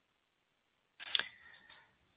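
Silence on a telephone conference line, then about a second in a click and a short burst of faint line hiss with a thin steady tone, as a line opens just before the operator speaks.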